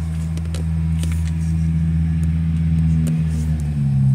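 A motor engine idling with a steady low hum, stepping up slightly in pitch near the end, with a few light clicks over it.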